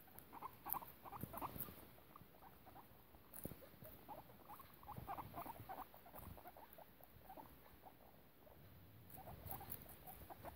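Guinea pigs, a sow and her young pups, making faint short squeaks in quick runs, with light clicks of chewing on lettuce leaves.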